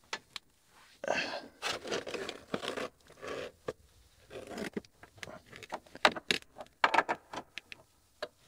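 Metal jaws of a jump starter's negative jumper clamp scraping and clicking against steel as it is moved and clamped on to find a good ground, with a run of sharp clicks in the second half.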